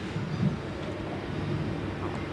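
Room tone of a hall: a low steady rumble with a few faint, indistinct soft sounds.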